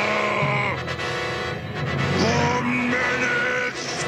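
Dramatic cartoon transformation music with a character's drawn-out, pitched yells and groans over it, several in a row.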